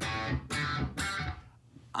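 Electric guitar, single notes picked on successive strings, three about half a second apart, then ringing away near the end. Each string is picked at its sweet spot just off the edge of the pickup for a bright, frequency-balanced tone.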